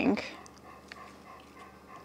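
A dog's heavy breathing, faint and steady, with one soft click about a second in.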